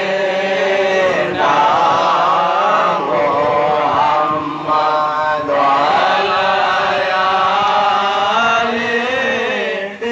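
Men's voices chanting an Islamic devotional recitation led over a microphone, in long melodic phrases with brief breaks about a second in and near the middle.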